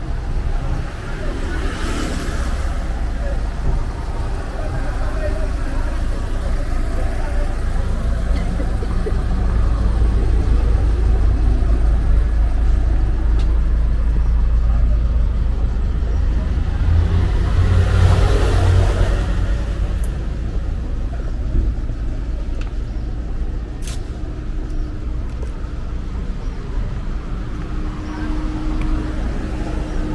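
Town-centre street traffic: a steady low rumble of engines, with a vehicle passing close about two seconds in and a louder, deeper one passing around the middle of the stretch.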